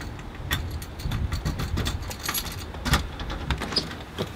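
A ring of keys jangling and a key clicking and scraping in a door lock as it is worked and turned, with a sharp click a little before three seconds in, over a low rumble.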